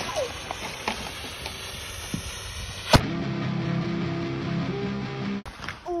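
A dynamite-stick firecracker's fuse hissing and sparking for about three seconds, then a single sharp bang as it goes off in a crack of a foam skimboard.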